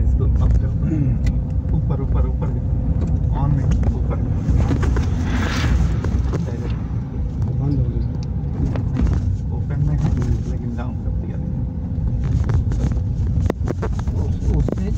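Cabin noise of a moving vehicle: a steady low rumble of engine and tyres on a rough road surface, with a brief hiss about five seconds in.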